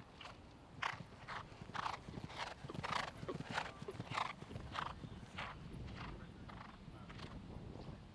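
A horse galloping on turf after jumping a brush fence: hoofbeats in a steady rhythm of about three strides every two seconds, fading as it moves away near the end.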